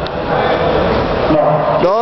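Indistinct people's voices talking, with no words clear enough to make out.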